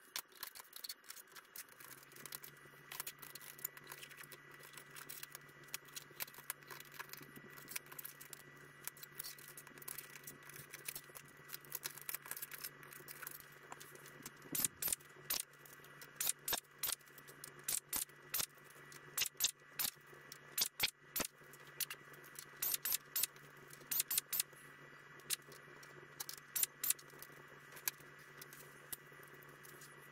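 Workshop handling and drilling sounds sped up about eightfold: a rapid, irregular string of sharp clicks and rattles as Cleco-pinned aluminium rudder parts are handled and final-drilled with an air drill, denser and louder from about halfway. A steady low hum sets in about two seconds in.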